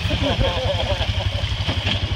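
A side-by-side's engine idling close by, a steady low pulsing rumble. People laugh and talk over it in the first second.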